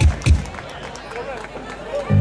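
Indistinct voices over a PA at an outdoor show, with two short, loud low thumps in the first half second.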